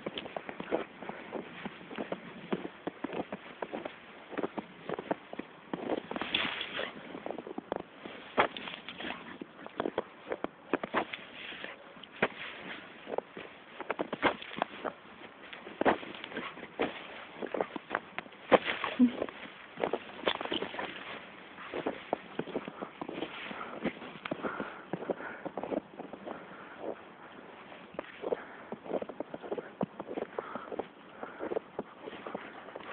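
Footsteps crunching through snow, an irregular run of short crunches a few per second as someone walks.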